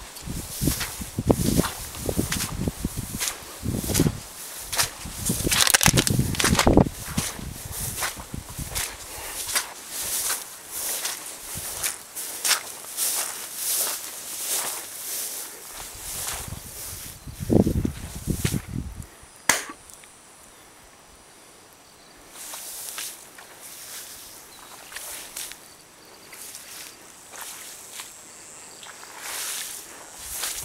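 Footsteps through long grass: an uneven run of swishing steps and rustles, busiest in the first several seconds, with a lull about two-thirds of the way through.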